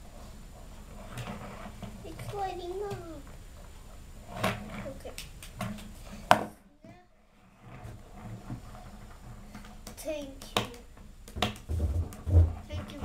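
A child's voice in a small room, speaking or vocalising in short, low stretches, with a few sharp clicks and knocks from a plastic toy being handled. The loudest click comes about six seconds in, followed by a second of near silence.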